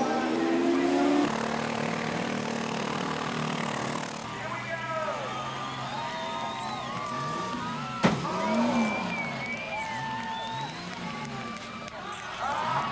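Speedway sedans' engines running steadily, then revving up and down over and over as the battered cars push and spin into each other. A single sharp bang of a car impact about eight seconds in.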